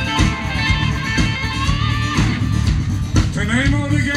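Live band music over a PA: electric and acoustic guitars over a steady drum and bass beat. A voice comes in near the end.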